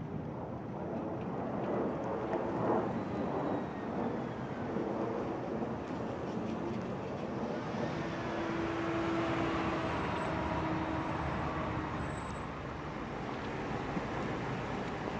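Motorcade vehicles moving at low speed: motorcycle and car engines with tyre and road noise. A steady hum comes in for a few seconds in the second half.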